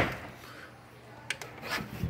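Handling noise: a sharp knock at the start, then faint scuffing and rubbing with a light tap and a short scuff in the second half.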